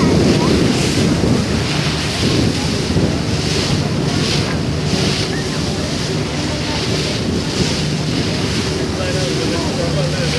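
A moving boat's wake churning and rushing along the hull, with wind buffeting the microphone and a steady low engine hum underneath.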